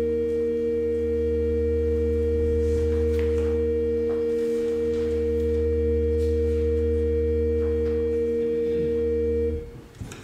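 Church organ holding one quiet, steady chord of pure flute-like tones, which stops about nine and a half seconds in.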